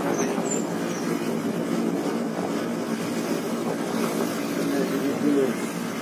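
Indistinct voices over steady outdoor background noise.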